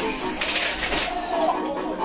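Indistinct voices, with a brief hissing rush of noise about half a second in.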